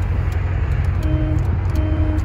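1978 Volkswagen Super Beetle's horn giving two short toots, one about a second in and one near the end. Under them runs the steady low drone of the car's air-cooled 1600cc fuel-injected flat-four and road noise while driving.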